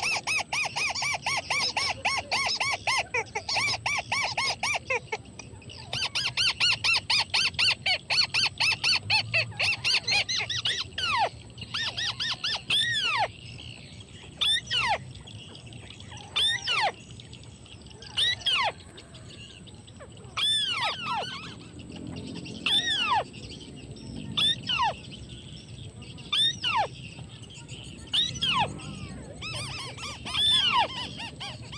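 White-browed crakes calling: two long runs of fast chattering notes, then single descending calls repeated every second or two. A thin steady high tone runs underneath.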